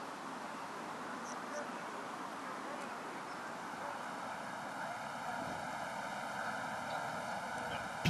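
Steady outdoor background noise on a golf course, an even hiss with no distinct putter strike or ball drop standing out. There are a couple of faint high chirps about a second and a half in.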